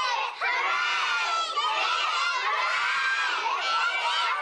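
A class of young children cheering and shouting all at once, a steady mass of many high voices.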